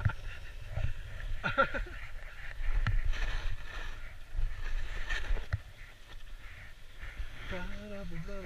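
Skis sliding and scraping over firm snow, a rough hiss with small clicks that is strongest in the middle seconds, over a low wind rumble on the microphone. A voice is heard briefly about a second and a half in and again near the end.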